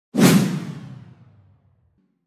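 A whoosh sound effect that hits suddenly just after the start and fades away over about a second and a half.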